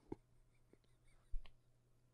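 Quiet room tone with a low steady hum. There is a faint click just after the start and a soft bump about one and a half seconds in.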